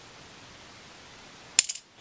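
A penny dropped into the slot of a scroll-sawn wooden gnome bank, landing inside with one sharp clink and a brief metallic rattle about one and a half seconds in.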